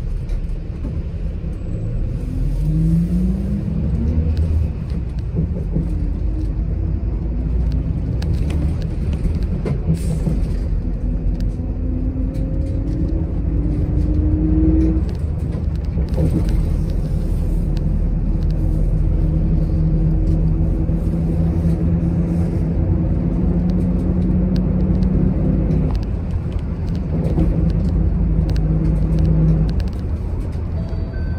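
City bus under way, heard from inside: a steady low rumble of engine and road noise. An engine and drivetrain drone rises in pitch as the bus speeds up, twice, then holds a steady hum, which breaks off briefly near the end.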